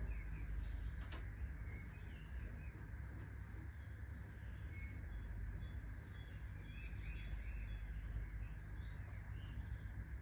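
Birds chirping faintly and intermittently in the background over a steady low ambient rumble.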